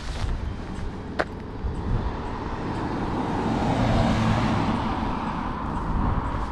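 A car passing close by on a city street, its engine and tyre noise swelling to a peak about four seconds in and then easing off. A single sharp click comes about a second in.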